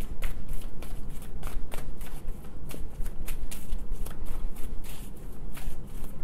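A deck of tarot cards being shuffled by hand: a quick, irregular run of short card clicks and slaps, several a second.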